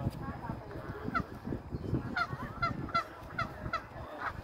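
A goose honking: a string of short, repeated honks, about two a second through the second half.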